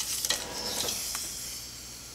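A strip of developed 110 film being pulled out and stretched between the hands: a short click, then a dry rustle of the plastic film that fades over about a second and a half.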